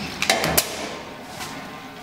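Empty glass wine bottles knocking against a stainless gravity filler as they are hung on its filling spouts: two sharp knocks within the first second, then fading.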